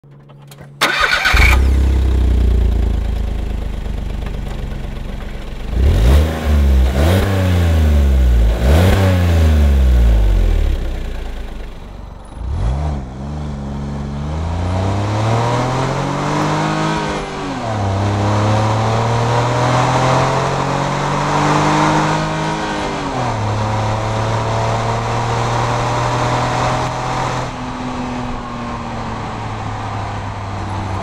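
2011 Smart Fortwo's 1.0-litre three-cylinder engine and exhaust: it starts about a second in and idles, then is blipped three times in quick rising-and-falling revs. It then accelerates, the revs climbing and dropping back twice at upshifts, and settles to a steady run near the end.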